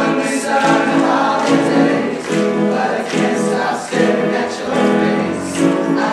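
Men's choir singing in several parts, holding chords that change every half second to a second, with the s-sounds of the sung words showing through.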